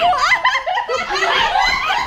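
People laughing loudly together, overlapping high-pitched laughs and squeals with no break.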